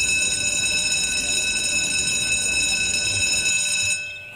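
Electric school bell ringing steadily in one continuous, unbroken high metallic ring, stopping abruptly at the end.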